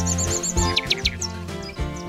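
Calm intro music of held notes with bird chirps mixed in: a quick run of about six high chirps at the start, then a few sweeping calls just under a second in.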